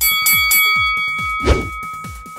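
A bell-like chime struck three times in quick succession and left ringing, signalling the start of a timed exercise interval. It plays over electronic dance music with a steady kick-drum beat, with one short loud hit about one and a half seconds in.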